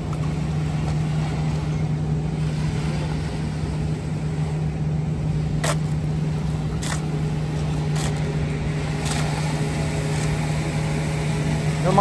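A steady low engine hum, like an idling vehicle, runs throughout. In the second half come four sharp clicks or knocks, about a second apart.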